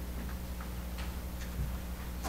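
Quiet meeting-room tone through the microphone system: a steady low electrical hum, with a few faint ticks.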